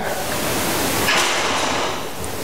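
A steady hiss of background noise with no speech, loud on the recording and even across all pitches. It grows slightly brighter about a second in.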